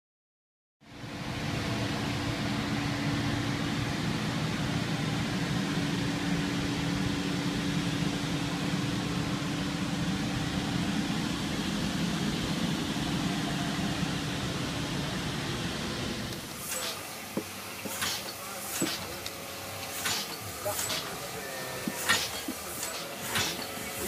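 Comadis C170T automatic tube filling machine running: a steady mechanical hum with a low tone, then, about two-thirds of the way in, the hum drops and sharp clacks of the mechanism come roughly once a second.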